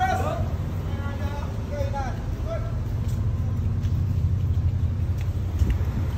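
Low, steady street rumble of road traffic mixed with wind on the microphone, with faint voices in the first couple of seconds.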